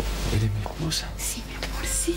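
Whispered speech over soft background music, with several short hissing breaths of whisper and a low steady hum.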